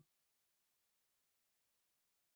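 Near silence: the audio track is completely silent.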